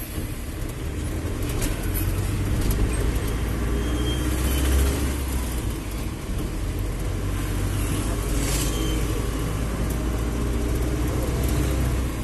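Mahindra Bolero pickup's diesel engine and road noise heard from inside the cab while driving, a steady low rumble.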